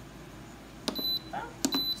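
Instant Pot Gem multicooker control panel beeping twice, two short high beeps about three-quarters of a second apart, each acknowledging a button press as the stew program is set for another hour.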